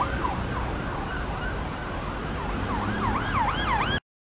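Emergency vehicle siren wailing in quick up-and-down sweeps, about two and a half a second; it fades in the middle and swells back louder near the end, over a low rumble of street traffic.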